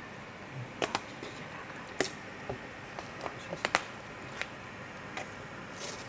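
Scattered light clicks and taps of a thin laser-cut plywood sheet being handled as its cut-out pieces are pushed free, about a dozen irregular small knocks.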